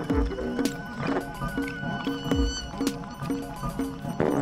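Live electronic music: deep kick-drum thumps that fall in pitch, sharp clicks, and short repeated pitched notes in a choppy, stuttering pattern.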